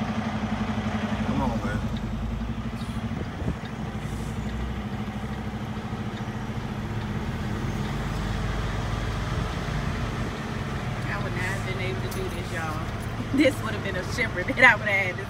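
Semi-truck diesel engine running at low speed while the rig is maneuvered around a corner, heard from inside the cab as a steady low hum with a fast pulse, and a single knock about three and a half seconds in.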